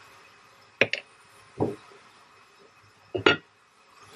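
Cookware clinks and knocks from a wooden spoon and the lid of an enamelled cast-iron braiser. There is a double clink about a second in, a duller knock shortly after, and a last bright clink near the end as the lid goes on the pan.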